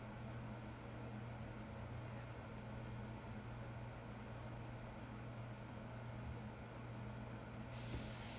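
Steady low hum with a faint even hiss: background room noise with no speech.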